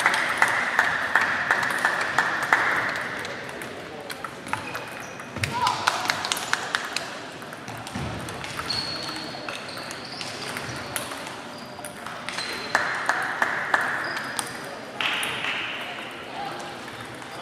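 Table tennis balls clicking sharply against bats and tables, in several overlapping rallies at irregular intervals, echoing in a large sports hall.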